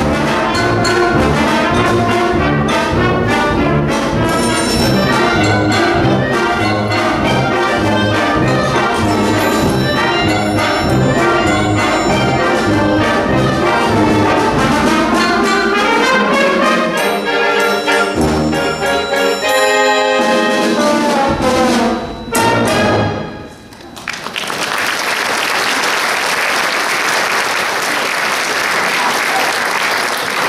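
Community concert band, brass prominent over woodwinds, playing a piece through to its end with a few short final chords. About 24 seconds in, the music stops and the audience applauds.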